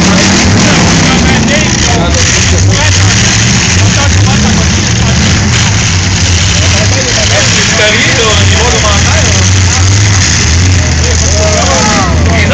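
Several demolition-derby cars' engines running and revving loudly, mixed with a crowd shouting and cheering.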